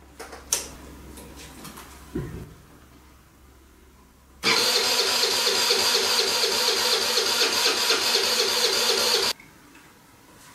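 Kymco scooter's rebuilt GY6 single-cylinder four-stroke engine turned over by its electric starter, with the spark plug disconnected so it cannot fire. The cranking runs for about five seconds and stops suddenly. It is being spun only to get oil through the freshly rebuilt engine.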